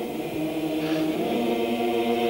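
A choir singing slow, held chords, the harmony shifting once or twice.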